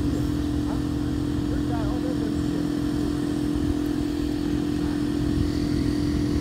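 A steady mechanical hum holding one pitch, with a low rumble underneath, like an idling engine or running machine, with faint voices in the background.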